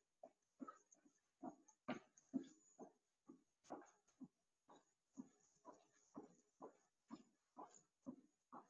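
Faint, regular sounds of a person exercising on the spot, jumping or skipping, about two a second.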